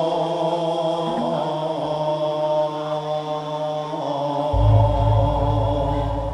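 Javanese Tayub music: a waranggono singing long, held, slowly bending notes over gamelan accompaniment. A deep low note enters about four and a half seconds in and rings on.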